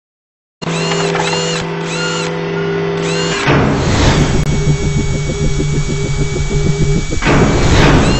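Logo intro sting of music and sound effects. A held chord with repeating short high chimes gives way, after a whoosh about three and a half seconds in, to a rapid, drill-like pulsing whir. A second whoosh comes near the end.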